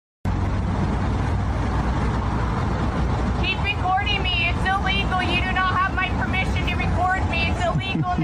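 Steady low rumble of idling cars. From about three and a half seconds in, a woman's raised, high-pitched voice speaks over it.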